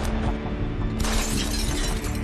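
Glass shattering: a sudden crash of breaking glass about a second in that runs on for about a second, over dramatic background music.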